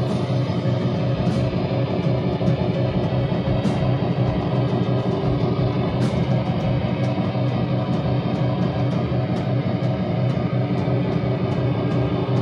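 Screamo band playing live: electric bass and guitars hold a loud, dense, unbroken wall of sustained chords.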